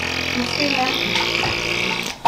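Tomato ketchup squeezed from a plastic squeeze bottle: a steady squirting hiss of sauce and air with faint wavering squelches, stopping sharply at the end.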